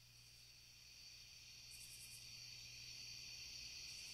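Near silence: a faint, steady high-pitched hiss that slowly fades in from about a second in, ahead of a song's start.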